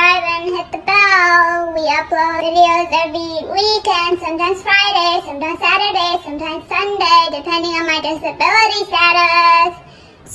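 A woman singing solo in a high voice, holding one note after another with a wavering pitch, broken by short pauses between phrases.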